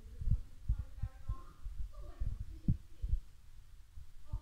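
Irregular low thumps and rumble under faint, distant voices in a pause between spoken lines.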